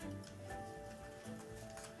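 Faint background music bed under a radio news bulletin, with held notes that change about half a second in and again past the middle.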